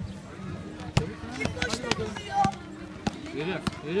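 A basketball bouncing on an outdoor hard court, a few separate sharp bounces, amid children's and spectators' shouts.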